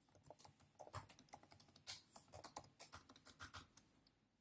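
Typing on a MacBook Pro's butterfly-switch keyboard: faint, irregular key clicks.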